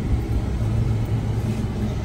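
Jeep Wrangler's engine running, a steady low rumble heard from inside the cabin.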